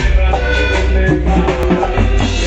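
Live cumbia band playing loud in the room, with a drum kit keeping the beat under electric guitars and a deep, steady bass line.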